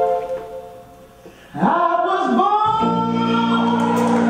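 A held organ chord dies away, and about a second and a half in a male soul singer comes in alone with a bending, gospel-style vocal run. About a second later the band's sustained organ chord comes back in under his voice.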